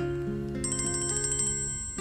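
A mobile phone playing a melodic ringtone: a tune of held notes stepping up and down, over a rapid high chiming pulse.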